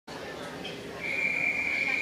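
Electronic starting signal of a swim-meet start system: one steady, high beep beginning about a second in and holding past the end, sending off a backstroke heat. Crowd chatter echoes in the pool hall underneath.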